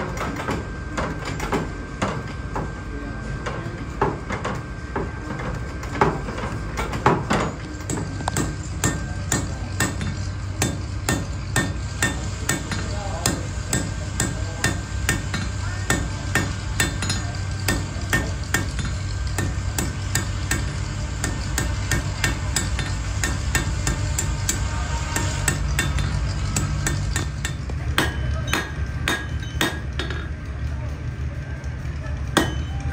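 Blacksmith's hand hammer striking red-hot iron bar stock on an anvil: sharp ringing blows, a few at first, then a steady run of two or three a second. A low steady rumble lies underneath.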